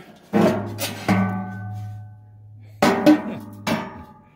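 Hand knocking on the steel heat-deflector plate at the back of a fireplace firebox: about six sharp metal strikes in two groups, each leaving a low ringing tone that slowly dies away.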